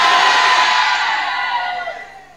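Church congregation cheering and shouting in response to the preacher's declaration, a held shout in the mix, dying away over about two seconds.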